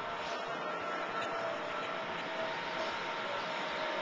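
Steady city street noise: a low wash of traffic with a faint steady hum running through it.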